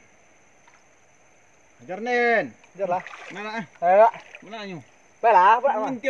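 A man's voice calling out loudly several times, starting about two seconds in, over faint steady background noise.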